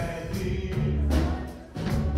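Live Christian worship song played by a small rock band: electric guitars, bass guitar and drum kit, with a male lead singer. The music drops briefly near the end, then comes back in.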